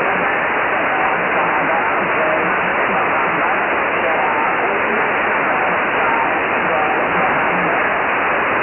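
Receive audio of a Kenwood HF transceiver on 20-metre upper sideband at 14.300 MHz: a loud, steady hiss of band noise, cut off above about 3 kHz by the receive filter. Weak stations sit barely above the noise.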